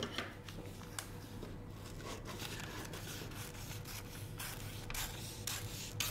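Scissors cutting along a drafted line through a large sheet of graph-paper pattern paper: a steady quiet cutting sound with a few faint clicks.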